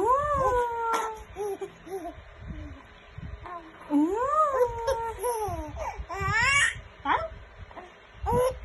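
Baby cooing: several drawn-out vocalizations that rise and fall in pitch, with shorter coos between, and a quick rising squeal about six seconds in.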